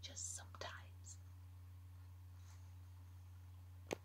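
A woman hushing in a whisper, a breathy "shh" in a couple of short hisses in the first second. A single sharp click comes near the end, over a faint steady low hum.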